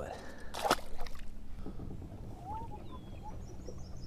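A largemouth bass being released back into the lake over the side of a kayak, hitting the water with one brief splash just under a second in.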